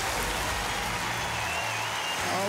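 Studio audience applauding over a game-show music cue.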